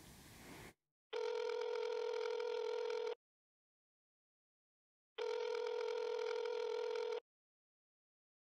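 Telephone ringback tone of an outgoing call: two steady rings, each about two seconds long, with about two seconds of silence between them.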